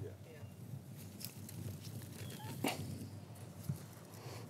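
Faint rustling and small clicks of garlic leaves and soil as a garlic plant is pulled up by hand from the bed, over a steady faint outdoor background.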